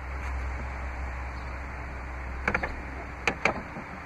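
Minivan Stow 'n Go floor bin lid being lowered shut, giving a few light clicks and knocks about two and a half seconds in and twice more a second later, over a steady low hum.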